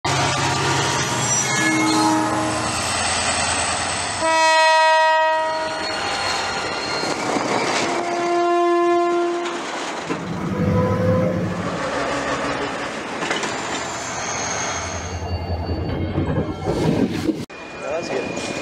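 CRRC Ziyang CDD6A1 diesel-electric locomotive running past with a freight train, sounding its horn twice: a loud chord of about a second and a half some four seconds in, then a second blast about eight seconds in. The wagons rumble and clatter over the rails in the second half.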